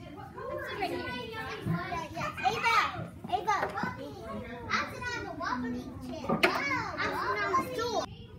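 Several young children talking and calling out over one another, their voices overlapping throughout.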